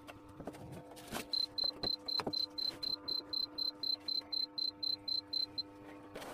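The digital timer on an acrylic bending machine beeps rapidly, about four beeps a second, starting about a second in and stopping shortly before the end. The countdown has run out, a sign that the acrylic has heated long enough to bend. A few light handling clicks come first, over a steady low hum.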